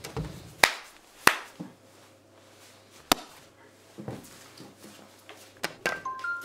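A few sharp knocks and taps, about five in all, the loudest near the start, as things are handled on a coffee table in a small room.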